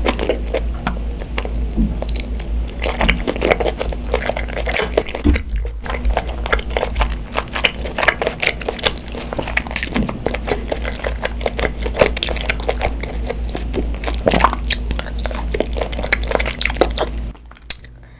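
Close-miked chewing of spicy tteokbokki rice cakes: a steady run of small wet mouth clicks and smacks over a low steady hum, cutting off suddenly near the end.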